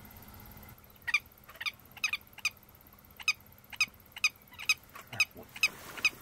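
Willet calling: a run of short, sharp, repeated calls, about two a second, starting about a second in.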